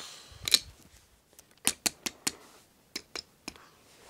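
Light, sharp clicks and taps at irregular intervals: a single one early, then a quick run of four, then another run of four near the end.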